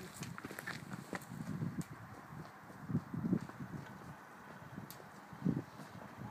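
Footsteps on a dirt track, a few soft irregular steps with scattered small clicks and scuffs.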